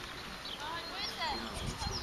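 Small birds chirping and singing repeatedly in quick, sweeping notes, over a low uneven rumble.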